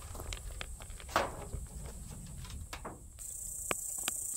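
Steady high-pitched insect drone, much louder after about three seconds, with a low rumble and a few light clicks and taps.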